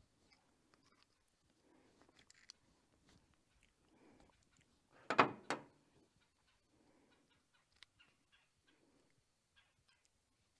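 A farm fowl calls once, short and loud, about five seconds in. Faint small clicks come from handling the generator's fuel hose.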